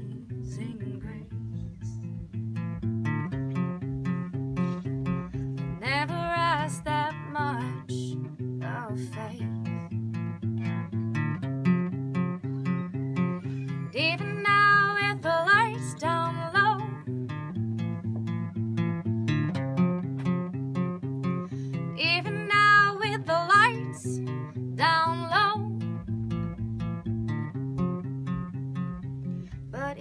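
Acoustic guitar played in a steady, repeating picked and strummed pattern. A woman sings long, wavering notes over it in three phrases, about six, fourteen and twenty-two seconds in.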